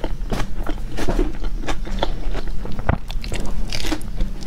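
Close, crisp crunching and chewing as a person bites into and chews a crusty fried pastry, picked up right by a clip-on microphone, with many irregular sharp crackles.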